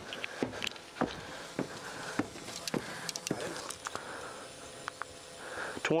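Boots climbing wooden stairs: a steady series of footfalls knocking on the treads, about two steps a second.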